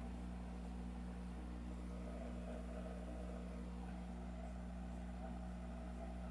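Faint, steady low hum with a light hiss, with no distinct sound event: room tone.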